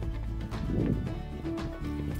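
Background music with sustained notes and a light beat.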